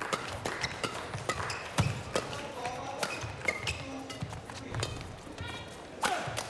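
Badminton doubles rally: rackets striking the shuttlecock in quick, irregular sharp hits, with a few short shoe squeaks on the court floor in the middle.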